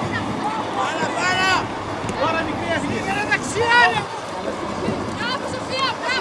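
High-pitched shouted calls from players and people at the pitch side during a girls' football match, several short shouts over open-air background noise.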